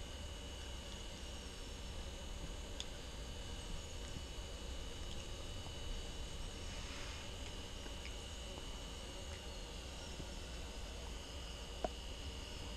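Quiet steady background hum and hiss with a thin, high, constant whine, and a couple of faint clicks.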